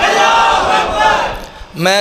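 Voices holding a long, drawn-out chanted call that fades away about a second and a half in; a man starts speaking just before the end.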